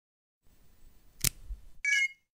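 Logo intro sound effect: a faint low rumble, a sharp hit a little over a second in, then a short bright chime near the end.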